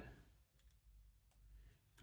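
Near silence, with a couple of faint clicks of hard plastic model parts being handled and fitted together.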